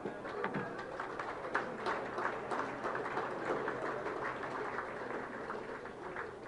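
An audience applauding, many overlapping hand claps. It starts at once and thins a little toward the end.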